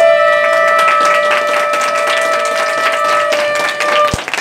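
Conch shells (shankha) blown in long, steady held notes, two at slightly different pitches: one stops about three seconds in, the other near the end. Sharp claps or clatter sound through them, as in ritual conch blowing at a puja.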